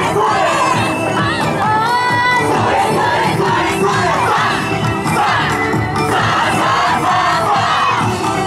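A yosakoi dance troupe shouting calls in chorus over loud festival dance music with a steady beat. A held sung melody stands out in the first couple of seconds.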